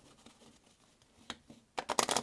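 A deck of playing cards being shuffled by hand: quiet at first, then a few sharp clicks in the second half that quicken into a short run near the end.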